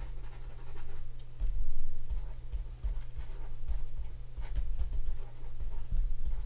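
A stylus writing on a tablet: soft, irregular scratching strokes of handwriting, over a low steady hum.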